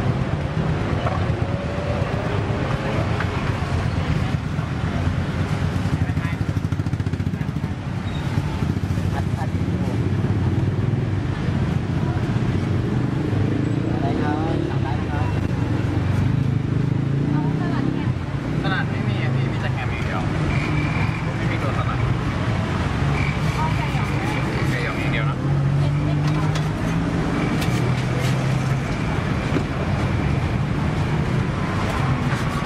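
Busy street-side ambience: steady traffic with motorbikes and cars going by, and indistinct chatter of people close by.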